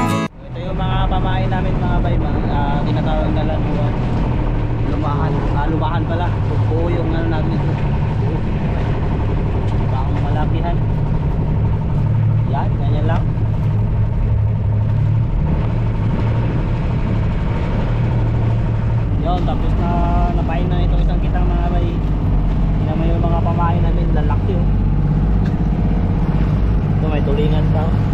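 Outrigger boat's engine running steadily with a low hum, with voices talking now and then over it.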